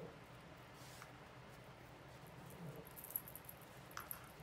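Near silence with faint handling sounds: yarn being drawn through and pulled tight in a crocheted pumpkin, with a few light clicks near the end.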